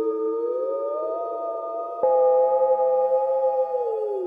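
Korg Prologue analogue synthesizer playing the "Experiment" patch: sustained chords whose notes glide up in pitch about a second in. A new chord starts sharply about two seconds in and slides down in pitch near the end.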